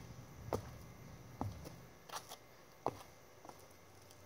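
Faint, scattered short taps and scuffs, about one a second, from a person stepping and swinging a weighted long lacrosse stick over a low background rumble.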